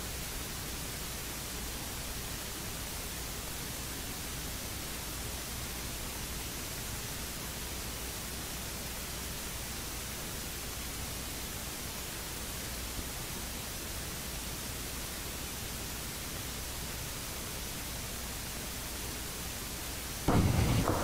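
Steady, even hiss with a low hum underneath, unchanging throughout: electronic noise from the sound system or recording chain, with no other sound standing out.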